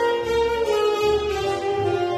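Tenor saxophone playing a melody in long held notes over a recorded accompaniment with a bass line, heard through loudspeakers in a room.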